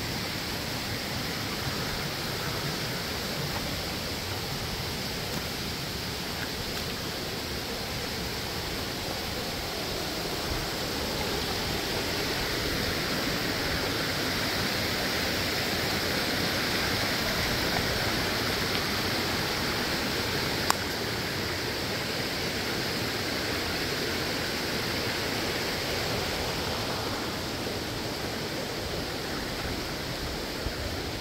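Steady rush of water from a stream and waterfall, growing a little louder in the middle, with a single sharp click about two-thirds of the way through.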